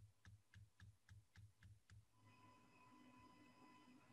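Near silence: faint, evenly spaced clicks, about four a second, for the first two seconds, then a faint steady electronic tone.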